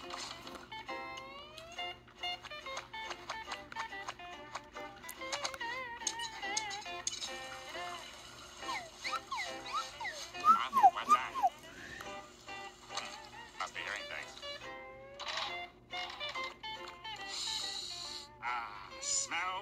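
Cartoon soundtrack music with slide whistle glides. A burst of quick up-and-down slides about ten seconds in is the loudest part.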